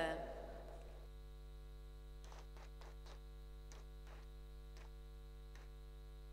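Steady electrical mains hum, with a handful of faint short taps between about two and six seconds in.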